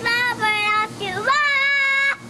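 A young boy singing a song: two short notes, then a note that scoops up about a second in and is held to the end.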